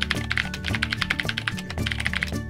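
Keyboard-typing sound effect, a quick, even run of clicks that matches on-screen text being typed out letter by letter, over background music.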